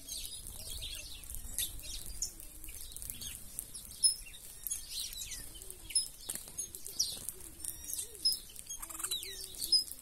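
Mixed flock of feeding birds, mostly red-cowled cardinals with saffron finches, sparrows and doves: many short, falling chirps and calls overlapping, wings flapping as birds come and go, and low coos underneath. A sharp knock about four seconds in is the loudest sound.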